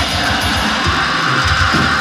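Metal band played live: distorted electric guitars over rapid bass-drum strokes and drums, loud and dense.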